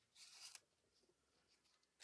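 Faint, brief rustle of paper ephemera being handled and sorted, in the first half-second, then near silence.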